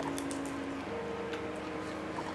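Quiet chewing of a mouthful of pizza, with a few soft clicks and squelches. Faint steady held tones sit underneath, shifting pitch once about halfway through.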